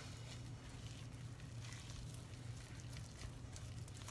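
Faint squishing and scraping of a spatula stirring thick, sticky dough in a stoneware bowl, over a steady low hum.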